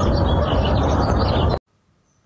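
Birds chirping over a loud, steady low rumble of outdoor noise; the sound cuts off abruptly about a second and a half in.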